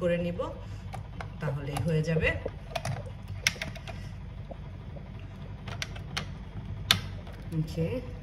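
Scattered plastic clicks and knocks from an electric sandwich maker as its lid is shut and its wind-up timer dial is handled to set a five-minute grill. The sharpest click comes near the end.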